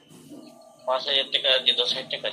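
A short lull, then a person's voice comes in about a second in, heard through video-call audio.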